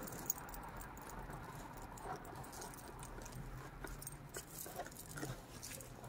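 Faint handling noise: soft rustling and light clicks as items are moved about in a gift box packed with crinkle paper shred, with one sharper click about a third of a second in.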